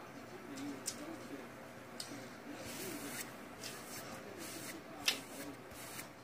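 Faint eating sounds as a Cubano sandwich is tasted: quiet chewing with a few sharp mouth clicks, the loudest near the end, over a faint murmur of a voice in the background.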